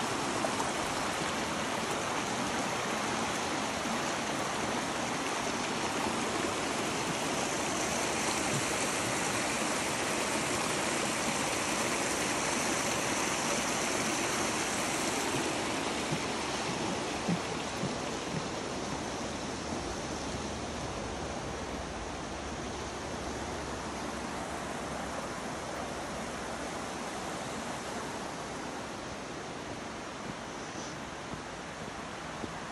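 Flowing creek water, a steady rush over rocks, fading gradually over the second half as the water falls farther away.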